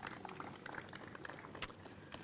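Faint outdoor background noise with scattered small crackles and one sharper click about one and a half seconds in.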